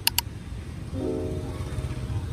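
Background music over the edited montage, with two quick clicks right at the start and held notes coming in about a second in.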